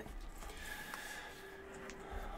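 Quiet room tone in a pause between words: a faint low rumble and a faint steady high tone, with no distinct event.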